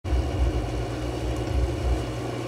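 A low, uneven rumble with a faint hiss above it.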